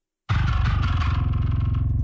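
Heavily saturated, distorted bass guitar from a deathcore song played back, a fast, even stream of low picked notes with plenty of top-end grit. It starts about a quarter second in.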